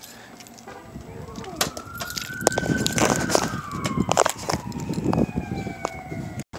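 A siren wailing, rising in pitch over the first few seconds and then slowly falling. Scattered knocks and clatter run under it as a bag is handled and lifted into a car trunk.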